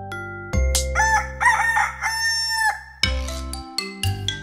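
A rooster crowing, one cock-a-doodle-doo about two seconds long that ends on a held note. It sounds over a gentle xylophone-style tune with a low bass, as the wake-up call at the change from night to morning.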